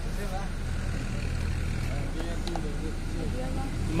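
A steady low engine hum, like a vehicle idling close by, under faint background voices.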